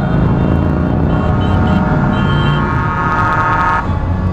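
A vehicle horn holds one long steady note for about three seconds and cuts off sharply near the end, with a few short higher toots over it. Underneath, the engines of a line of motorcycles run as they ride past.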